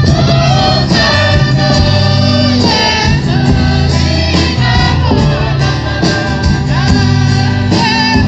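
Torres Strait Islander choir of men's and women's voices singing an island hymn in harmony, accompanied by guitar.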